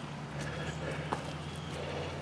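A steady low hum with a few faint light knocks over a soft background hiss.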